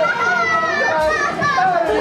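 Many children's voices talking and calling out at once over background music.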